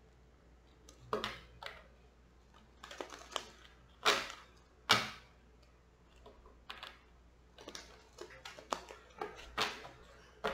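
A deck of Gypsy (Cigano) fortune-telling cards being shuffled by hand: short, irregular bursts of cards flicking and slapping together, loudest about four and five seconds in.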